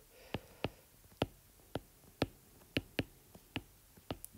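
A stylus tip tapping on a tablet's glass screen during handwriting: about ten short, sharp ticks at an uneven pace.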